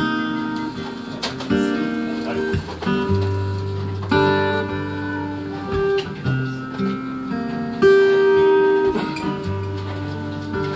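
Live band playing an instrumental passage: two acoustic guitars strumming chords over a Fender Jazz Bass electric bass line.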